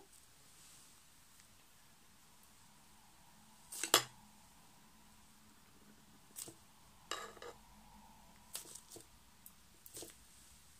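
Long metal tweezers clicking and tapping, with one sharp click about four seconds in, a short scrape about three seconds later, and a few lighter clicks near the end.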